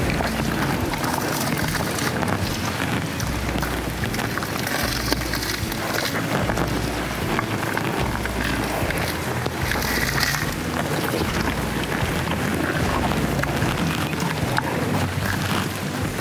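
Wind buffeting the microphone: a steady rush of noise with irregular low rumbling gusts.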